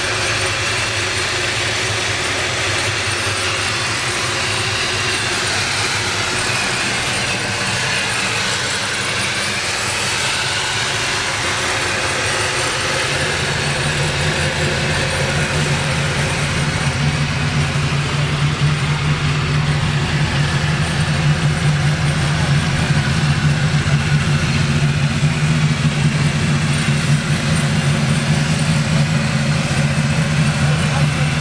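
ProCharger-supercharged V8 engine idling steadily, its low hum growing louder about halfway through.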